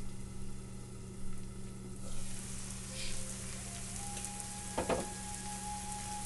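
Onions, garlic and tomatoes frying in oil in a covered cast iron skillet: a steady sizzle that grows louder about two seconds in, with a brief knock about five seconds in.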